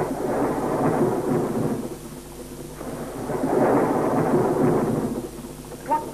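Rolling thunder in two long swells: the first dies down about two seconds in, and the second builds up and fades away near the end. It is a film sound effect, heard through dull VHS-recorded audio.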